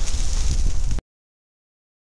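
Kitchen noise as a pancake is flipped with a spatula on a non-stick griddle pan: a steady low rumble with a few faint knocks, cutting off suddenly about a second in.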